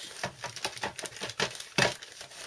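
A toy tractor being handled on a paper sheet: a quick run of light clicks and taps, about seven in under two seconds, with a louder rustle near the end.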